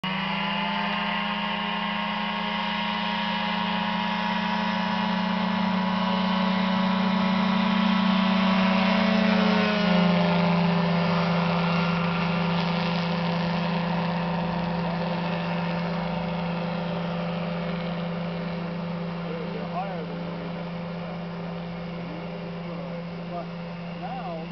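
Vector 627 ultralight aircraft's engine and propeller running at takeoff power, growing louder as it approaches, dropping in pitch as it passes about ten seconds in, then fading steadily as it climbs away.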